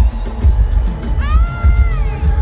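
Live pop music over an arena sound system, picked up by a phone's microphone: a heavy bass beat about twice a second, with a high held note that rises and falls slightly over the second half.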